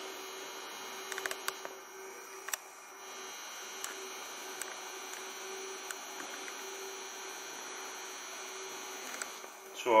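Steady electrical hum with a faint high whine above it, and a few light clicks about one and two and a half seconds in.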